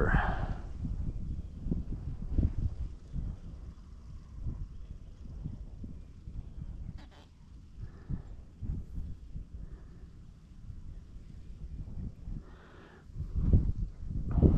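Wind rumbling on the microphone, uneven and gusty, with small handling clicks and a few faint short vocal sounds.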